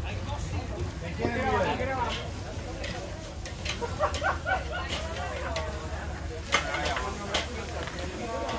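Ribeye steaks searing over direct charcoal fire on a kettle grill, with a faint sizzle and several sharp clicks of metal tongs as the steaks are turned, under background voices chattering.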